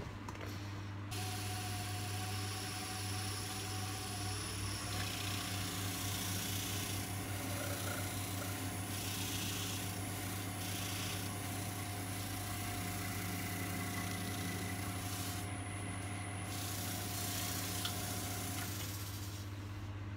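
Wood lathe running with a bowl spinning on it, its motor humming with a steady whine, while wax and a cloth are pressed against the turning wood with a rubbing hiss. The lathe starts about a second in and stops shortly before the end.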